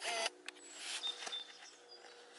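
A short pitched call at the very start, then faint, thin, high chirps of small birds, with soft rustling of handling beneath.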